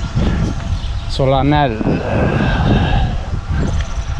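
Wind and tyre noise on the camera microphone of a cyclist riding a road bike, a steady low rumble, with a short vocal sound from the rider about a second and a half in.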